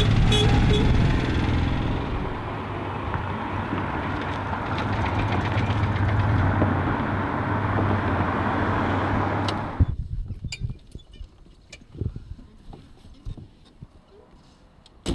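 Citroën 2CV's air-cooled flat-twin engine running as the car drives past, with a quick run of short horn toots at the very start. The engine sound cuts off abruptly about ten seconds in, leaving only a few faint knocks.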